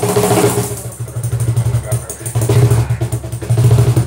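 Acoustic guitar strummed over a cajón played by hand, the cajón's deep bass strokes keeping a steady beat.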